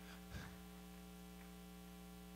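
Near silence: a faint, steady electrical mains hum, with no other sound.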